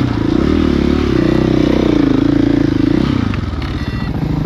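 Dirt bike engine running under a rider on a trail, its pitch rising and falling as the throttle opens and closes.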